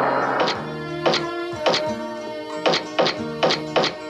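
Background music with a series of sharp knocks from a mallet striking a chisel, roughly two a second and coming closer together near the end.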